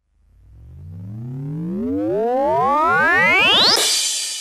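Electronic synthesizer sweep in a music track: after a moment's gap, a rising tone climbs steadily in pitch and swells louder for about three and a half seconds, then breaks into a crash of noise near the end.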